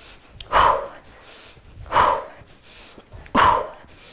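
A woman's short, breathy calls, three of them about 1.4 s apart, forced out with each kettlebell swing: the rep count spoken on a hard exhale.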